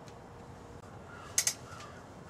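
Quiet shop room tone with two sharp clicks close together about halfway through, and faint short calls of a bird in the background.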